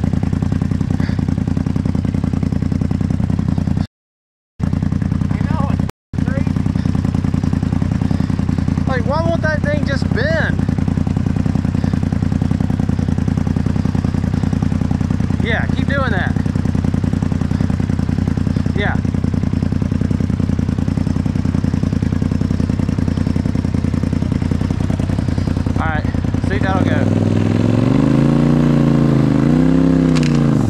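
Side-by-side UTV engine running steadily at low revs while the vehicle works against a tree on a rock-crawling trail, then revving up and down twice near the end. The sound cuts out completely twice, briefly, a few seconds in.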